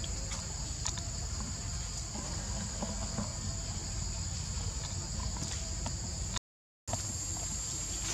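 Steady high-pitched buzz of insects, with a low outdoor rumble underneath and a few faint ticks; it breaks off completely for a moment about six and a half seconds in.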